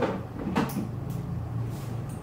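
Close-up ear cleaning: metal ear picks and tweezers working at the ear make a few short, soft scrapes and rustles over a steady low hum.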